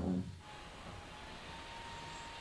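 Faint steady hiss with a single thin, held tone, after the tail end of a spoken word at the very start.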